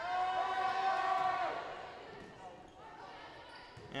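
Spectators in a reverberant school gym holding one long vocal note, a drawn-out crowd call that swells and ends about a second and a half in, then quieter gym noise during play.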